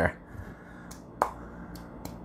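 Marble pestle mashing garlic and Thai chilies in a marble mortar: faint grinding and a few light taps, with one sharp stone-on-stone click about a second in.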